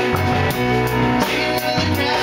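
Band playing live rock music: electric bass and keyboard over a drum kit, with evenly spaced cymbal strokes.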